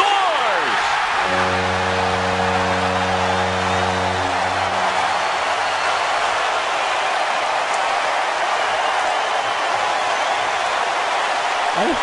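Hockey arena crowd cheering loudly for a shootout goal. A deep horn sounds over the cheering from about a second in and is held for about four seconds.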